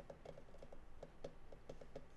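Faint, irregular taps on a laptop keyboard, roughly five keystrokes a second.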